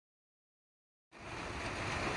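Dead silence for about the first second, then a steady background hiss with a low rumble comes in suddenly: outdoor ambient noise picked up by a phone microphone.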